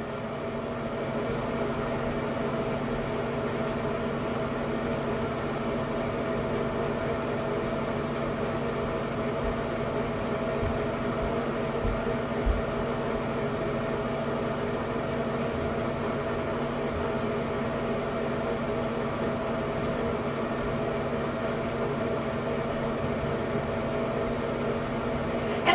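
Ceiling light-and-exhaust-fan combo unit running with a steady hum, with a brief low bump about halfway through.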